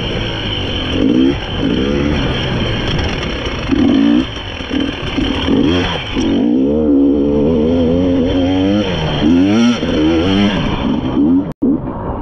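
Dirt bike engine revving up and down over and over, its pitch climbing and dropping as the throttle is worked along the trail. The sound cuts out for an instant near the end.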